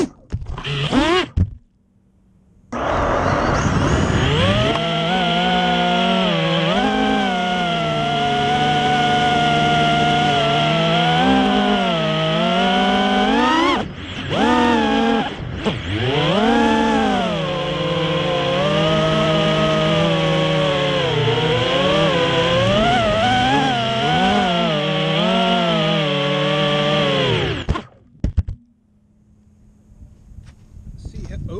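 Racing quadcopter's brushless motors spinning Ethix S3 propellers: a few short throttle blips, then a steady whine of several tones that rises and falls with the throttle in flight. It dips briefly twice midway and cuts off suddenly near the end as the quad comes down.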